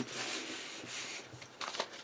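Hands rubbing and pressing across a paper card panel to seal a shaker card, a soft brushing sound that fades about a second in. A few light clicks of the card being handled follow near the end.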